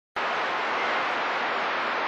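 A CB radio receiver on channel 28 (27.285 MHz) giving out steady static hiss with its squelch open and no station coming through. The hiss starts abruptly just after the beginning.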